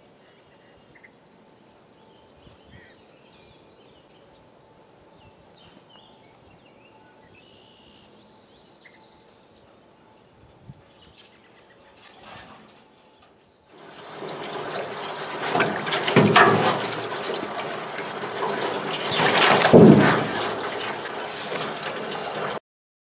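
Steady insect trilling for the first half. Then, abruptly, loud water sloshing and splashing in a galvanized stock tank holding snapping turtles, swelling twice.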